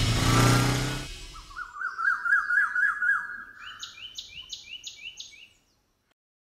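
A loud music cue fades out in the first second, then birdsong: a run of quick rising chirps, followed by a second, higher call repeated five times, cutting off suddenly near the end.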